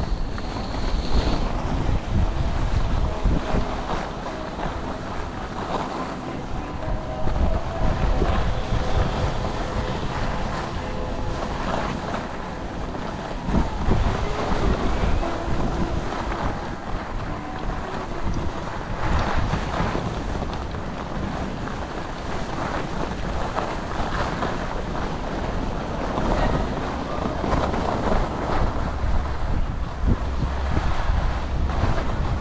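Wind buffeting a GoPro's microphone while skiing downhill, with the steady hiss and scrape of skis sliding on packed snow, rising and falling unevenly.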